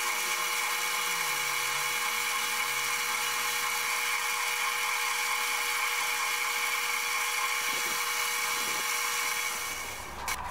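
Lathe motor running with a steady high whine while the spinning cast cholla-skeleton blank is sanded and polished by hand. The whine dies away near the end.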